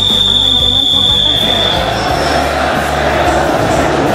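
A single long, steady whistle blast, held for about two seconds. Then a large crowd of voices rises, with music underneath.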